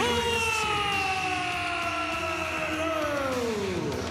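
A male ring announcer's voice holding one long, drawn-out "oh" as he stretches out the champion's name, the pitch sliding slowly down and then falling away steeply near the end, over a steady crowd noise.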